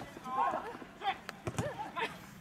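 Players' shouted calls carry across a football pitch, with a few sharp knocks of ball touches about a second in.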